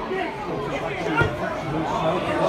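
Spectators at a football match talking among themselves, several voices overlapping, with a short dull thud about a second in.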